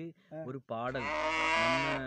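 A few spoken words, then a long drawn-out bleat of a sheep or goat kind starting just under a second in and still going at the end.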